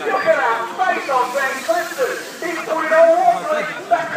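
Speech: voices talking, with no other sound standing out.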